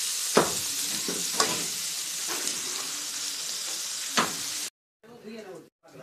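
Yardlong beans, potato and pointed gourd sizzling in oil in a kadai while a spatula stirs them, with a few sharp knocks of the spatula against the pan. The sizzle cuts off abruptly near the end.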